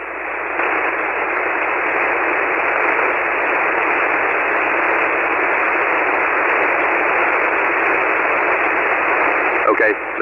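Steady hiss of band noise from a ham radio receiver on 40-metre single sideband, confined to the narrow voice passband, swelling over the first second and then holding level.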